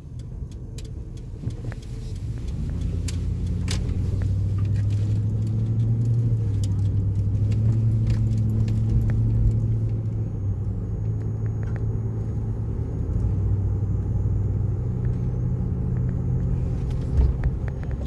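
Car engine and road noise heard inside the cabin of a moving car. A low steady hum grows louder over the first few seconds and then holds, shifting slightly in pitch, with a few faint clicks and rattles.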